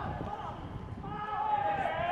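Players' voices calling out on the pitch, with one long held shout starting about halfway through, over scattered thuds of boots and ball on the grass.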